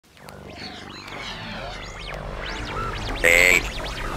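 Electronic intro music fading in from silence, with synthesizer tones sweeping up and down in pitch and a loud, bright held tone about three and a quarter seconds in.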